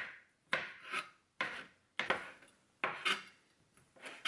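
Chef's knife chopping mushrooms and then sausage on a cutting board: quick, uneven strokes about two a second, each chop trailing off briefly.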